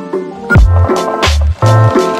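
Background music: sustained keyboard chords over a beat, with heavy kick drum and deep bass coming in about half a second in and repeating.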